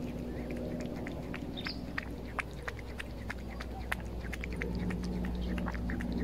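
A cat eating sprats in tomato sauce from an open tin: wet, irregular chewing and licking clicks, several a second. A low steady hum runs underneath.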